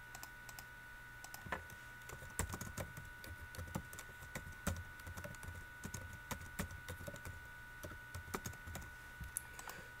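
Computer keyboard typing: faint, irregular keystroke clicks, some in quick runs.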